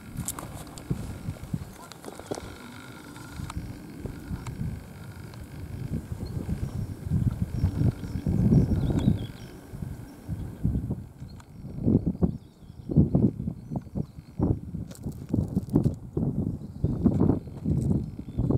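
Wind buffeting the microphone outdoors: a low, gusty rumble that rises and falls, coming in shorter separate gusts in the second half.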